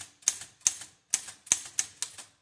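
Type bars of a Smith Corona Super Speed (L.C. Smith standard) typewriter striking the platen, about six sharp clacks at roughly three a second, as the Q and A keys are pressed in turn to test them after their type bar ball bearings were replaced.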